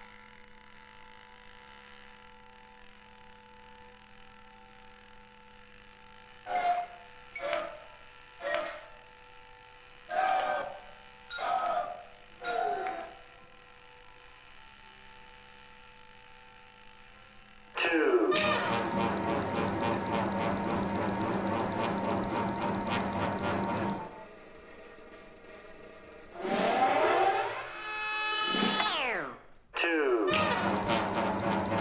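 Contemporary chamber ensemble music. Quiet held tones give way to six short falling glides, then a loud, dense passage of rapid repeated pulses lasting several seconds, and long falling sweeps that cut off suddenly near the end.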